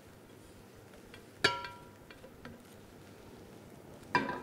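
A single ringing clink on a glass serving bowl, struck by cookware about one and a half seconds in and dying away, with a few small clicks and faint scraping as toasted bread crumbs are pushed from a pan into the bowl.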